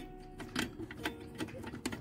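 Several small metallic clicks and taps, spread irregularly, as a metal support bracket is worked into place against a finned heatsink on an amplifier's circuit board.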